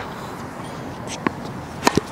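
A tennis ball bounces on the hard court about a second in. Just before the end, a racket strikes it on a forehand with a sharper, louder pop.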